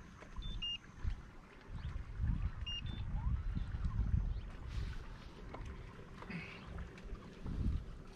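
Wind buffeting the microphone in uneven low gusts, with faint short high chirps about half a second in and again near three seconds.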